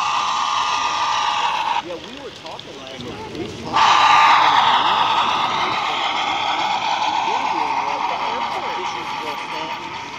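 HO-scale model freight train running past close by, a steady whirring rush of wheels and motor that cuts out about two seconds in, comes back suddenly about four seconds in and then slowly fades. Crowd chatter runs underneath.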